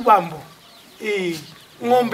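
A man's voice at the start, then a chicken clucking once about a second in, one short call that falls in pitch.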